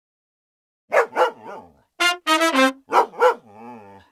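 A comic title jingle: a dog barks twice, a brass instrument plays a quick three-note phrase, and the dog barks twice more.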